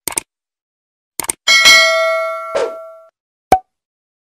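Subscribe-button animation sound effects: a quick double mouse click, another double click just over a second in, then a bright bell-like ding that rings for about a second and a half. A single sharp click comes near the end.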